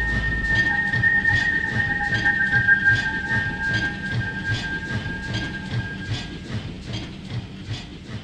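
Train sound effect closing a song's backing track: wheels clattering in a steady rhythm of about three clacks a second over a low pulse, with held high tones that die away about six and a half seconds in. The whole sound fades out steadily.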